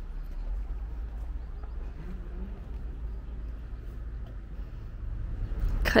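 Quiet open-air background with a steady low rumble and faint, distant voices about two seconds in.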